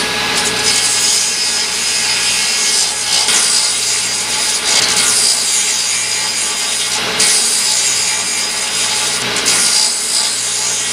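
Vintage Atlas table saw running, its blade cutting through a 2x4 over and over, the motor's steady hum under the loud hiss of the cuts.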